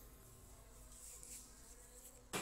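Near silence: faint steady room tone with a low hiss and hum.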